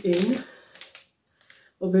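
A woman's voice speaking briefly, then a few faint clicks and a short, almost silent pause before her voice comes back loudly near the end.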